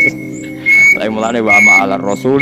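A man's voice reciting an Arabic Quran verse, over a steady background track in which a short high chirp repeats about every second.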